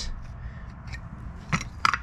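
A new swivel caster's metal mounting plate being fitted against a plastic cart base: light handling scrapes, then two sharp knocks close together near the end as it is set in place.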